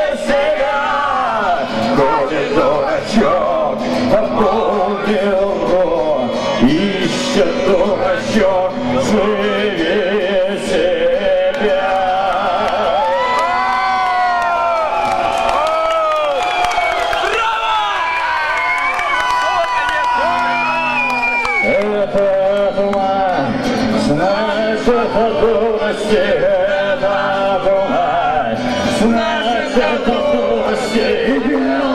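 A live solo performance: electric guitar strummed steadily under a man's rough, strained singing voice, heard through a club's PA in a large room.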